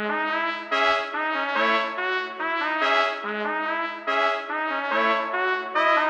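Sampled gypsy trumpet from the Balkan Ethnic Orchestra Kontakt library playing a looped chord pattern in C-sharp minor, with notes changing under a second apart over a held low note. Its tone brightens and dulls as a parametric EQ is swept over it.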